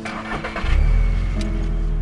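A car engine starting about half a second in and then running with a steady low rumble, under background music.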